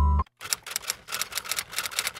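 Background music breaks off, then comes a fast, irregular run of typing clicks, a typewriter-style sound effect lasting nearly two seconds.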